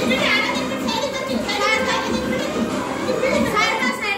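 A group of young children shouting and squealing excitedly during a game of musical chairs, with recorded music still playing under them.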